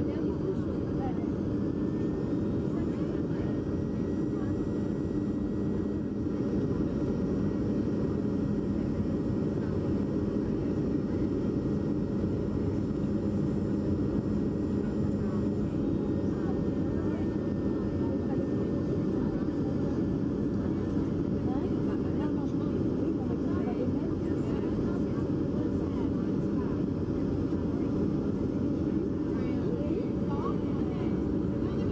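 Steady cabin drone of a jet airliner on its descent to land, heard from inside the passenger cabin: engine noise and rushing air, with a few steady hums beneath the roar.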